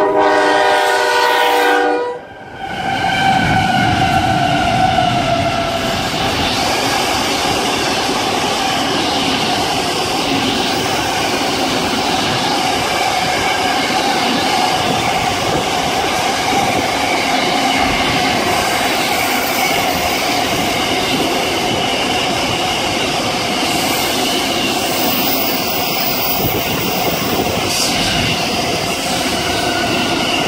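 Freight train horn sounding one loud chord for about two seconds. After a short break, the container freight train led by locomotives PHC 001 and PHC 002 passes close by: the locomotives go past first, then a long string of container wagons rolls past steadily.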